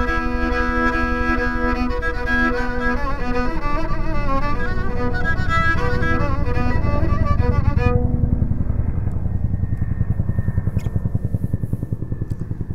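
Kamancha, a bowed spike fiddle, playing a melody that stops about eight seconds in. Underneath is a low, pulsing helicopter rumble that grows louder and carries on after the playing ends.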